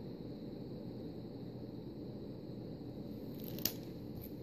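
Soft handling noise of packaged nail decal sheets being moved and set down, over a steady low background hum, with one short sharp tick a little past three and a half seconds in.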